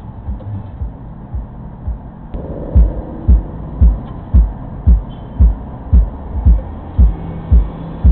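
A steady low thumping beat, about two thumps a second, much louder from about two and a half seconds in: the bass drum of music playing inside a parked car.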